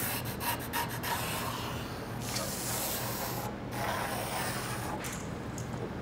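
A pencil scratching on a walnut tabletop as a line is drawn along its edge, an uneven rubbing sound with a few light clicks in the first second. A low steady hum runs underneath.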